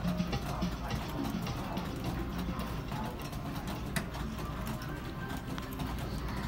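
Busy arcade-restaurant background: faint music mixed with people's voices, with no clear beat, and a single sharp knock about four seconds in.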